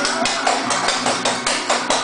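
Rapid footwork strikes from a dancer's tap shoes on a hard floor, about seven sharp taps a second, over music with a steady beat.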